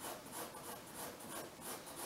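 A drawing tool scratching across a large sheet of brown paper on a wall in quick repeated strokes, about four or five a second.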